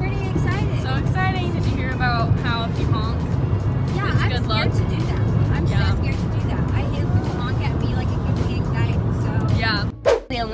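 A woman singing along to music inside a moving car, over the steady low rumble of road noise in the cabin.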